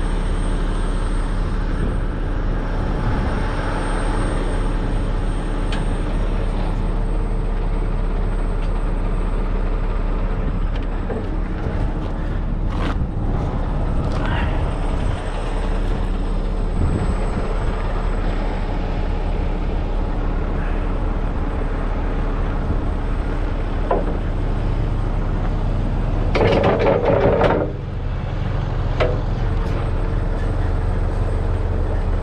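Heavy rotator tow truck's diesel engine idling steadily. Near the end there is a short, louder rush of noise, about a second long.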